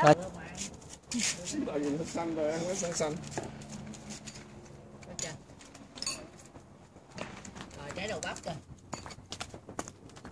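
Quiet, indistinct voices talking, with scattered sharp clicks.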